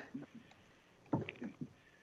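Quiet conference-call line, with a short faint burst of sound from a caller's phone connection a little past a second in.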